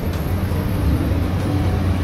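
Steady low rumble of wind buffeting the phone's microphone.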